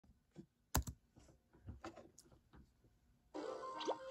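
A couple of sharp clicks and light tapping on a laptop, the sounds of starting video playback. About three seconds in, the cartoon's soundtrack starts from the laptop speaker: music with gliding, swooping tones.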